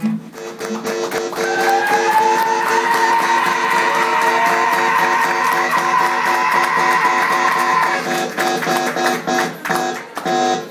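Live music with a guitar playing a steadily repeated pattern. A long high tone slides upward about a second in, holds, and stops about eight seconds in.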